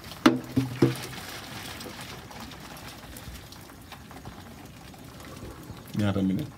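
Water poured from a plastic bottle, running and splashing steadily, after three short voice sounds in the first second.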